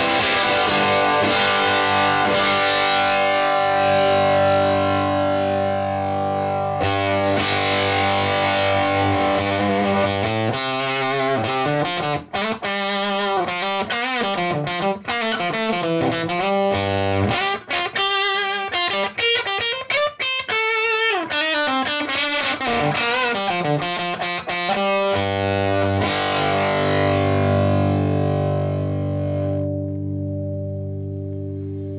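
Electric guitar (a Reverend Charger HB with Railhammer Hyper Vintage pickups) played through the JTH Electronics Typhon fuzz pedal into a Roland Cube 40GX amp. Fuzzed chords ring out for about the first ten seconds, then comes a run of single-note lines with bends and vibrato, and sustained chords return near the end.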